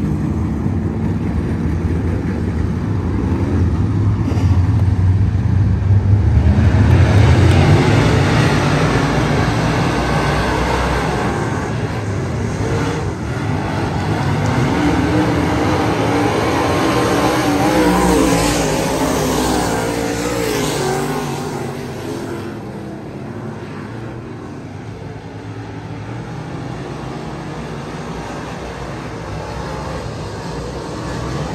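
A field of dirt-track race cars running laps, their engines loudest as the pack passes close about seven seconds in. The engines swell again with rising revs around eighteen to twenty-one seconds, then grow quieter in the last third.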